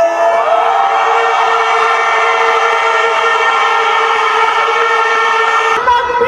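A man's voice, amplified through a microphone and PA, holds one long steady note after a short upward slide into it. The note cuts off suddenly just before the end.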